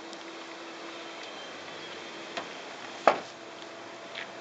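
Steady outdoor background hiss with a faint hum, broken by a small click and then one sharp knock about three seconds in.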